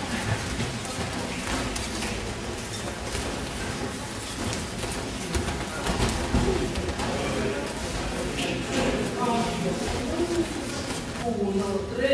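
Judo practice on tatami: a hubbub of many voices talking at once, with feet shuffling and dull thuds of bodies landing on the mats. The loudest thud comes about six seconds in.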